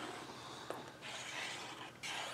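Faint handling sounds as the tip of a squeeze bottle lays a bead of liquid glue along the edge of black cardstock, with one small tick less than a second in.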